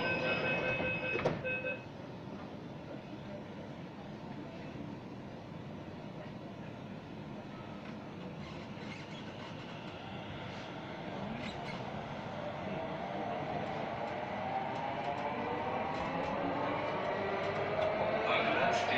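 Delhi Metro Magenta Line train: on-off warning beeps and a knock in the first two seconds, then it pulls out of the station over steady running noise. From about halfway through, the electric traction drive whines and rises in pitch as the train speeds up, growing louder.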